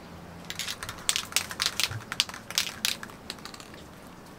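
Can of gold metallic spray paint being shaken, its mixing ball rattling in quick, irregular clacks that start about half a second in and stop about three seconds in.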